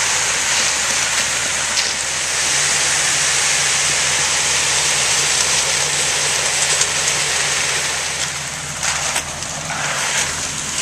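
Concrete mixer truck running while it discharges: a steady engine hum under a loud continuous hiss of wet concrete sliding down the chute onto the rebar slab. The hum steps up about two seconds in, and the sound eases near the end with a few clicks.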